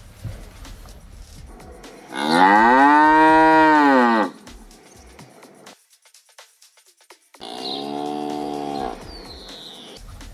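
Cow mooing twice, a sound effect for a digitally inserted cow. The first moo is loud and long, rising then falling in pitch. A second, quieter and steadier moo comes later.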